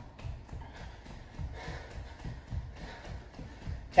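Bare feet thudding on a hardwood floor while jogging in place, about three to four footfalls a second.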